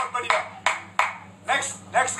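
Hand claps in an even beat, about three a second, each with a short ringing tail, with a brief vocal sound near the end.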